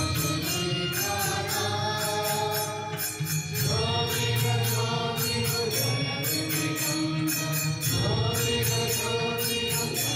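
Devotional chanting with music: long held sung notes that shift in pitch a few times, over a steady low drone and a regular beat.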